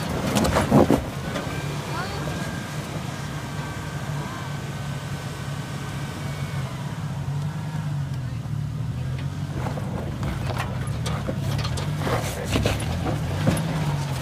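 Toyota Tacoma pickup's engine running steadily at low revs as the truck crawls through a rocky rut off-road, with sharp crunches and clicks of tyres on rock and dirt near the start and again in the last few seconds.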